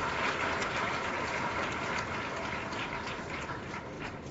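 Steady background noise of a large hall picked up by the podium microphones, with scattered faint clicks and rustles and no speech.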